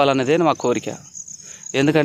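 A man talking, with a pause of about a second in the middle, over a steady high-pitched chirring of field insects that runs on unbroken underneath.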